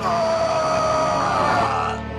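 A person's long, high, held scream over a low steady drone, cut off sharply near the end.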